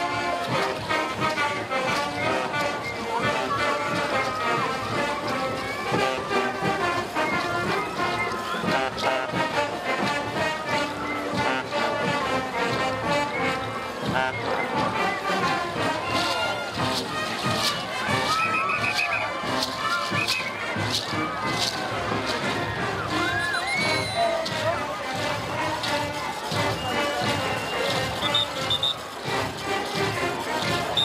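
Live band music for a folk dance parade: several instruments playing a melody together over a regular drumbeat, at a steady level throughout.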